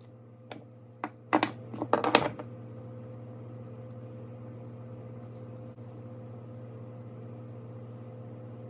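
A few knocks and then a loud clatter, about one and a half to two and a half seconds in, as the walls of a mold box are pulled off a cast silicone mold block and set down on a wooden workbench. A steady low hum runs underneath.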